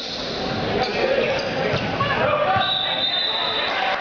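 Boys' volleyball rally in a reverberant school gym: the ball is struck a few times and sneakers squeak on the hardwood floor over players' calls and spectators' chatter. A steady high tone sounds for under a second about three seconds in.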